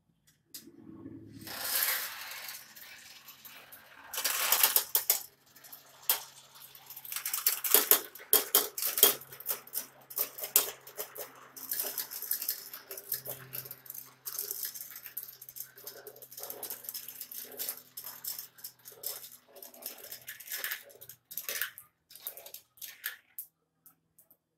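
Several GraviTrax marbles rolling and clattering down a multi-level plastic marble run, clicking through the track pieces and along the metal rails. The rattle is loudest about four seconds in and again from about eight to eleven seconds, then thins to scattered clicks and stops just before the end.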